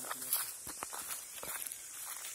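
Footsteps on a dry dirt forest trail, with a few irregular crunches of dry leaf litter and brush rustling against the walkers.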